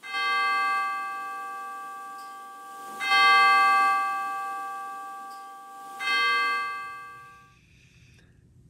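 A bell struck three times, about three seconds apart, on the same note each time. Each stroke rings and slowly fades.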